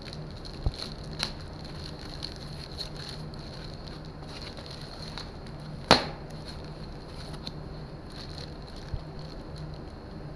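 Foam and plastic packing material being pulled off a bike handlebar by hand: light crinkling and crackling, with one sharp snap about six seconds in, over a steady low hum.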